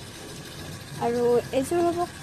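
Mostly speech: a second of quiet room noise, then a woman's voice speaking.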